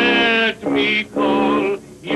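Music from a comic song number: a man's voice singing three held notes in a row, with a short break between each.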